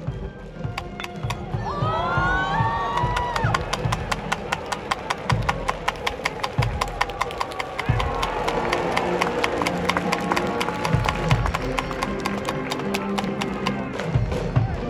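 Baseball cheering music in a stadium: a fast, even beat of drum hits and claps with melodic instruments over it, rising in pitch about two seconds in and then holding longer notes.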